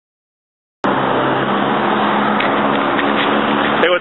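Silence, then street traffic cuts in abruptly about a second in: a motor vehicle running close by, a steady engine hum over road noise.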